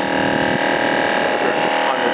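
MotoMaster Heavy Duty twin-cylinder 12 V tire inflator running with a steady, even drone while pumping a van tire at around 57 psi.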